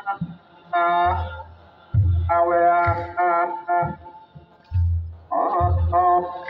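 Ethiopian Orthodox ceremonial music: deep, slow drum beats, roughly one a second, under long held melodic notes that come in phrases.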